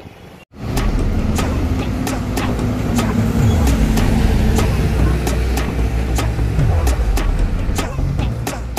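Coach bus diesel engine running close by as the bus moves off, its low pitch dropping twice, with traffic noise. A steady beat of background music runs underneath, about two beats a second.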